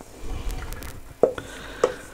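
Finely chopped mushrooms and onion tipped from a bowl into a stainless-steel frying pan and scraped out with a wooden spoon, with two sharp knocks in the second half.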